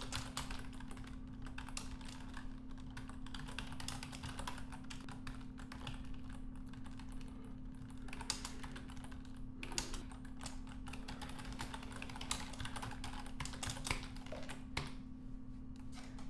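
Typing on a computer keyboard: an irregular, continuous run of keystrokes, with a steady low hum underneath.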